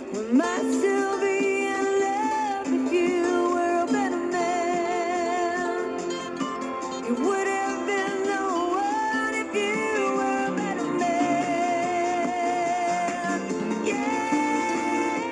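Acoustic guitar played steadily, with a wordless sung melody above it that wavers with vibrato and slides between notes.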